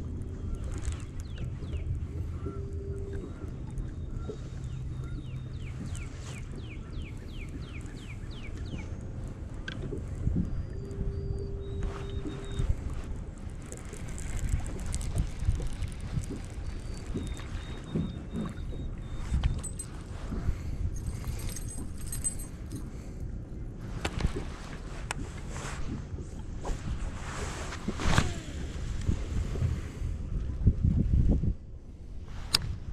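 Low steady hum of a bass boat's motor, with water and wind noise around it. A few short high chirps and brief beeps come in the first half, and some sharper clicks and rustles near the end.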